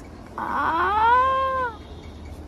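Puppy yawning with a single drawn-out squeaky whine that rises, holds and then drops away, lasting just over a second.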